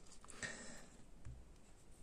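Faint handling of a small plastic Xiaomi Aqara door sensor and its magnet piece in the hands, with a few light clicks and a soft low bump a little past the middle.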